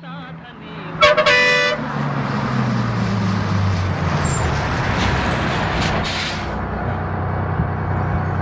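A bus horn sounds one loud blast of just under a second, then the bus's diesel engine runs with a low drone whose pitch falls a little as it slows and draws up, over rolling road noise.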